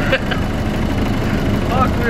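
VW Golf rally car's engine idling steadily.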